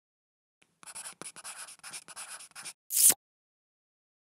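Pen-scribbling sound effect: a quick run of short scratchy strokes, as if the script logo is being written by hand, ending about three seconds in with one louder, brief swish.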